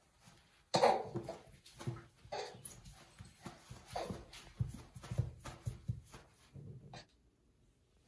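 A baby's short vocal sounds: a string of brief squeals and grunts, the first the loudest, coming every half second to a second and stopping shortly before the end.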